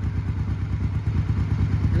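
1988 Honda Shadow 1100's V-twin engine idling warm, a steady low throb of even pulses. It runs smoothly on both cylinders now that the ignition-wiring short that had killed the spark to cylinder one has been repaired.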